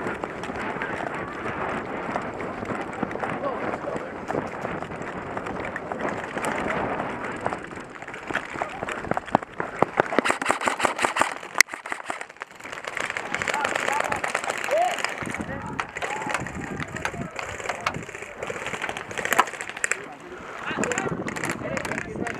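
An airsoft player running across hard dirt, carrying a rifle: footfalls and the rattle and rub of gear, with scattered sharp clicks that are thickest around the middle. Voices can be heard as well.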